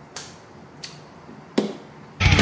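Three short knocks, the last and loudest about a second and a half in.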